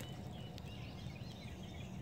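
Faint outdoor ambience: distant birds chirping softly over a low, steady background rumble.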